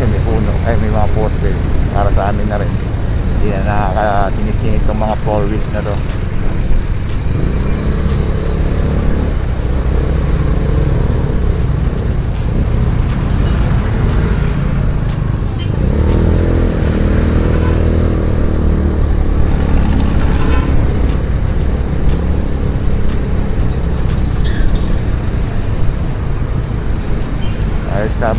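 Riding noise from a KYMCO Super 8 125 cc scooter moving through city traffic: a steady low wind rumble on the action camera's microphone, with the scooter and surrounding traffic beneath it.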